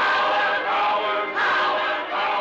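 A choir singing, with loud, swelling phrases: one begins right at the start and a second about a second and a half in.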